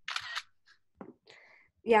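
Camera shutter sound of a screenshot being taken for a group picture of the video call: a quick double click in under half a second.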